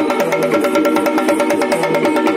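Live Yakshagana accompaniment: fast, steady drumming over a sustained harmonium drone, playing continuously.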